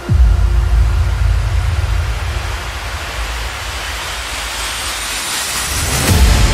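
Cinematic transition effect in an intro soundtrack: a deep bass drop at the start, then a low rumbling noise swell that builds and grows brighter, with a faint rising whistle near the end, like a riser leading into the next music hit.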